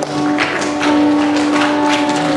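Live band playing without singing: guitars strummed in a steady rhythm over a held note.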